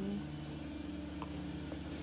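Quiet room tone: a steady low hum, with two faint ticks about halfway through.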